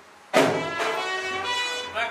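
A hanging temple bell struck once about a third of a second in, its tones ringing on and slowly fading.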